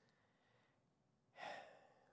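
Near silence, broken about a second and a half in by a single audible breath from a man.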